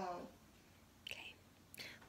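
Mostly speech: a voice ends a sentence at the start, then a quiet pause with a short soft whisper-like hiss about a second in and another faint breathy sound just before talking resumes.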